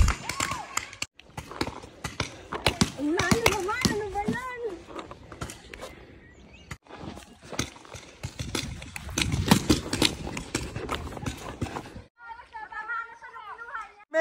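Paintball markers firing in uneven runs of sharp pops, mixed with players shouting across the field.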